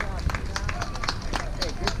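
Voices calling out, with scattered sharp hand claps at an irregular pace and a low rumble of wind on the microphone.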